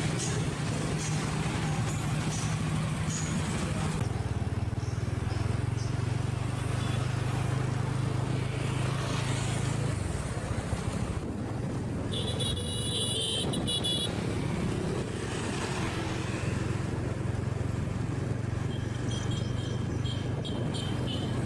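Motorbike engine running with road and traffic noise while riding, a steady low hum. A brief high, pulsing tone sounds about twelve seconds in.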